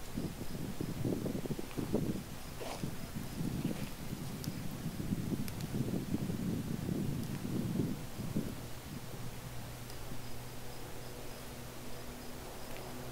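Shrub being dragged over by a rope-and-pulley block and tackle: irregular low rustling of branches and rigging with a few faint clicks, dying down about nine seconds in.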